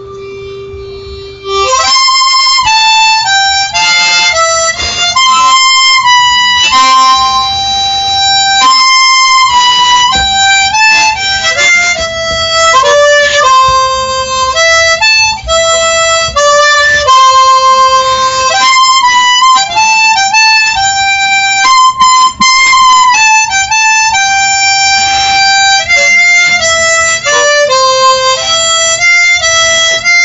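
Solo harmonica played with cupped hands: a melody of held notes and quicker steps. A softer held note opens, and the playing comes in loud about two seconds in.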